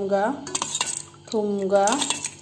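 Steel spoon clinking and scraping against a stainless steel bowl while stirring spiced pani puri water, with a run of sharp metallic clinks about half a second to a second in. A person's voice is heard at the start and again in the second half.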